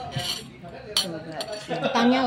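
A metal spoon scraping and clinking against a ceramic bowl, with one sharp clink about halfway through.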